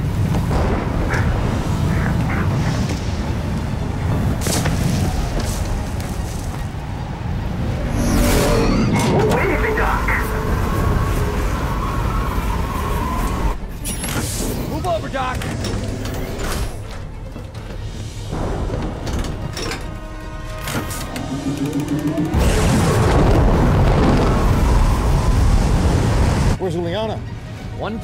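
Film soundtrack: dramatic music over deep rumbling booms and effects, with a few short voices.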